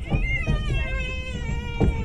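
A drawn-out, high-pitched wavering cry, voice-like, held over the steady low rumble of a moving train. A few sharp knocks come through, one about half a second in and another near the end.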